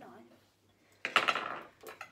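A short, sudden clatter of metal carving tools being handled on a table, about a second in.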